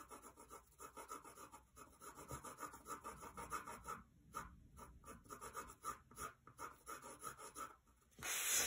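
Pencil shading on drawing paper: faint, even back-and-forth strokes, about three a second, with a brief pause about halfway through.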